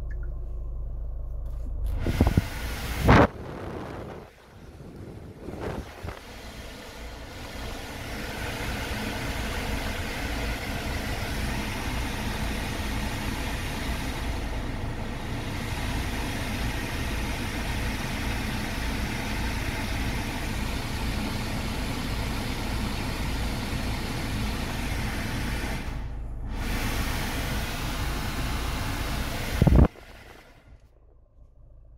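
A car's climate-control blower running at full speed, a steady rush of air from the dash vents over the low idle of the engine. It builds up over a few seconds after a couple of loud clicks, drops out briefly near the end, and stops with a click.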